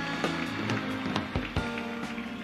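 Live band playing a short instrumental fill between introductions: held chord notes with several sharp drum hits.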